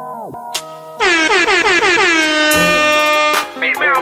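Hip-hop radio transition: the song's pitch sinks away and cuts out. About a second in, a loud DJ air-horn sound effect blasts for about two and a half seconds, and a voice comes in near the end.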